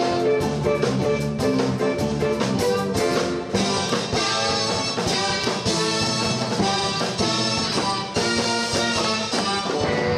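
Live R&B band playing an instrumental passage on drum kit, electric guitar and keyboard, with brass-like held chords coming in about three and a half seconds in.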